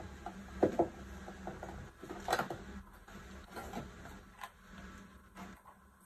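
Cardboard box and paper insert being handled during an unboxing: a few scattered light rustles and taps, the loudest about two seconds in.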